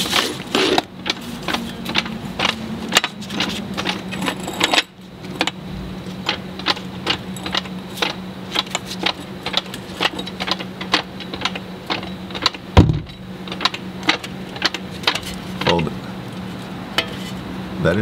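Jack being worked to raise a lower control arm into the spindle, making rapid clicks and light metal knocks, a few a second, over a steady low hum; one louder knock comes about thirteen seconds in.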